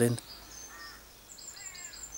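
Faint birdsong: short, high, thin calls about half a second in and again through the second half.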